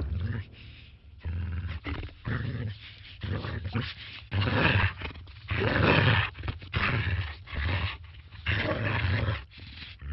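A dog barking and growling in a string of irregular bursts, the dubbed voice of the goldfish that scares off the cat.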